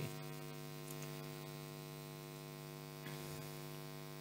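Steady low electrical hum with a buzz of many even overtones, unchanging throughout.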